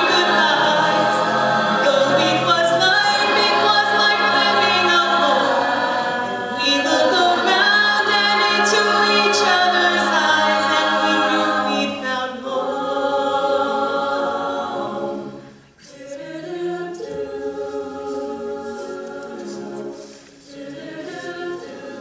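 A cappella vocal group singing: many voices in layered harmony with no instruments. The singing drops out briefly about two-thirds through and comes back softer.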